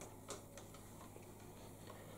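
A few faint clicks of a jumper wire being pulled out of and pushed into a solderless breadboard, over near-silent room tone.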